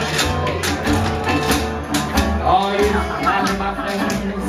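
Jug band playing live with a steady rhythm: plucked strings over a low bass line, a washboard clicking the beat, and a melody line that bends in pitch.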